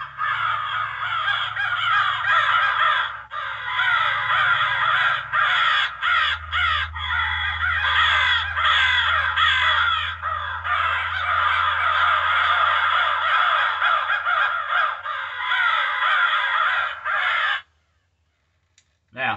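Cass Creek Ergo electronic crow call playing its 'crow attack' recording through its built-in speaker: many crows cawing over one another, agitated as if attacking something. The calls are loud and unbroken, and they cut off suddenly near the end.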